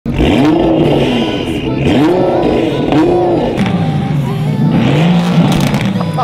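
1000 PS Nissan GT-R's twin-turbo V6 revved several times in quick succession, each rev climbing and falling back in pitch.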